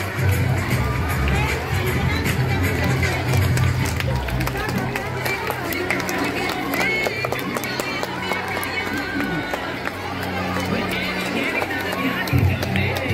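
Punjabi dance song with singing over a strong bass line, with crowd noise underneath. The bass is heaviest for the first few seconds, then thins out.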